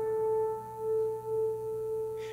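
A tuning fork at about A440 rings with a steady, pure note while the acoustic guitar is tuned to it. Its loudness swells and dips slowly, twice.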